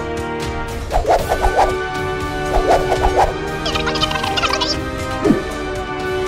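Comic cartoon vocal sound effects over background music: two short bursts of rapid, gobble-like warbling about a second and two and a half seconds in, then a fluttering high chatter around four seconds and a short falling squeak near the end.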